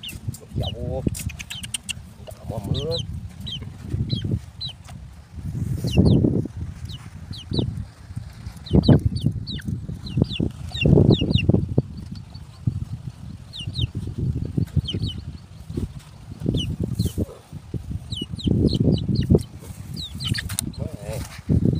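Irregular rustling and knocking from wire fan guards and a wire mesh cage trap being handled on the ground, loudest in several bursts through the middle. Birds chirp in short, high calls throughout.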